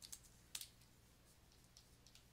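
Near silence, with two faint short clicks about half a second apart in the first second.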